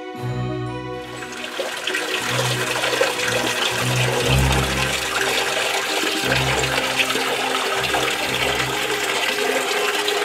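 Water pouring steadily from a marble ram's-head fountain spout and splashing onto mossy stone, starting about a second in. Soft background music continues underneath.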